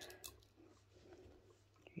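Near silence, with a couple of faint clicks near the start as small metal parts of a tufting gun are fitted together by hand.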